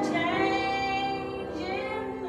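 A woman singing a solo with piano accompaniment, holding one long note and then moving to a new note near the end.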